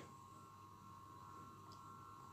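Near silence: room tone with a faint steady tone in the background.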